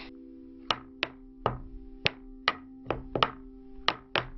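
Cartoon sound effects of toy shapes being tossed out of a toy box and landing on the floor: about eight short, sharp knocks at uneven intervals, over a quiet held chord of background music.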